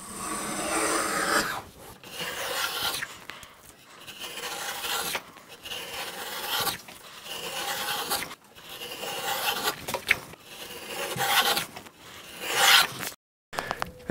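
Stanley No. 50 combination plane with a beading cutter taking repeated strokes along the corner of a wooden board: about eight rasping shaving passes, each about a second long with short pauses between. This is the second side of the bead being cut to form a fully beaded corner.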